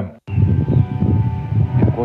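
Wind rumbling and buffeting on an outdoor microphone, starting after a brief dropout just after the beginning.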